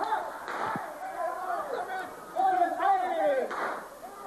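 Wordless voices in a theatre: loud shouts and laughter rising and falling, with a short noisy burst about half a second in.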